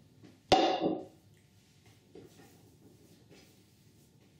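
A single sharp knock on the kitchen worktop about half a second in, ringing briefly as it dies away, as the dough ball and mixing bowl are handled; then only faint, soft sounds of dough being kneaded.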